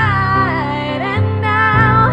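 A woman singing a drawn-out, wavering note in a pop ballad over keyboard piano chords that change a few times.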